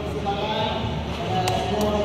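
A group of young men's voices chanting, led by one voice through a handheld microphone and PA, with drawn-out, held notes. Two sharp knocks come about one and a half seconds in.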